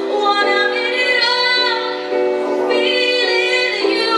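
A young female singer sings a slow song through a microphone and PA, holding long notes over backing music.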